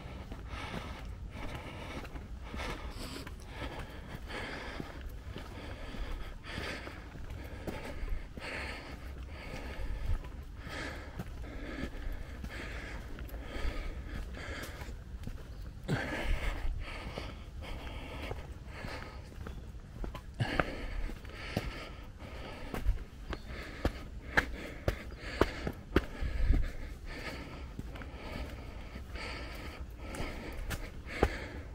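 Heavy, rhythmic breathing of a hiker climbing a steep track, with footsteps on the path over a steady low rumble. In the second half the footsteps become sharper and louder, short taps at a walking pace.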